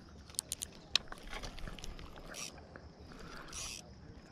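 Spinning fishing reel being handled and cranked to bring in line, with a few sharp clicks in the first second, then soft scratchy winding noise and two brief hissy bursts. The line is coming in after pulling free of lake weeds.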